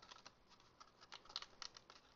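Faint, scattered light ticks and rustles of folded cardstock being handled and lined up by hand, with a few clicks clustered in the second half.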